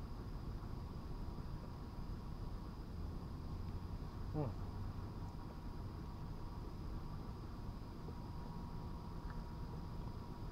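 Steady night-time outdoor background: a faint, continuous insect drone over a low rumble. A short hummed "mm" comes about four and a half seconds in.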